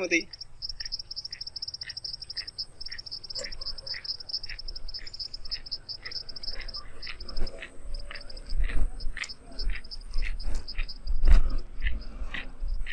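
Insects in the fields trilling in a fast, steady, high pulsing buzz that breaks into shorter stretches about halfway through. A separate short chirp repeats about twice a second throughout.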